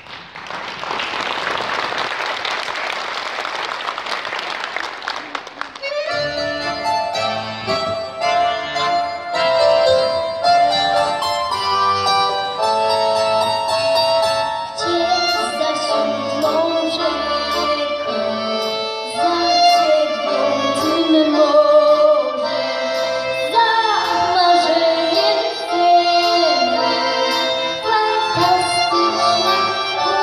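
Audience applause for about six seconds, then a school band with drum kit, keyboard and wind instruments starts a pop song. A young girl's singing voice joins in about halfway through.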